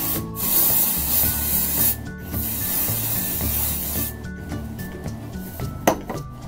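Aerosol dry shampoo sprayed onto hair in long hissing bursts, the spray stopping briefly twice and ending about four seconds in.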